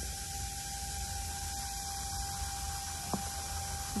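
Steady background hiss and low hum, with one faint click about three seconds in.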